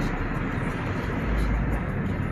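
Road and engine noise inside a moving Hyundai car's cabin: a steady low rumble, swelling briefly just past the middle.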